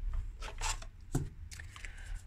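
Hands handling tarot cards: a few short, scattered rustles and light taps, with one small thump about a second in.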